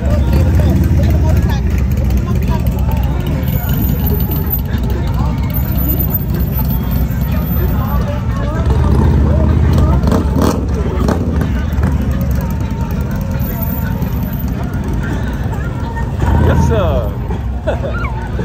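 Motorcycle and trike engines running at low speed as they ride past close by, a low rumble that swells about a second in and again around ten seconds, over crowd chatter.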